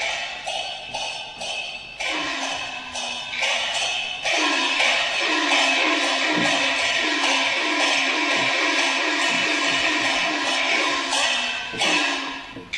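Peking opera accompaniment: percussion strikes in a steady pattern of about three beats a second. About four seconds in the ensemble grows louder and fuller, playing a repeated melodic figure over the beat.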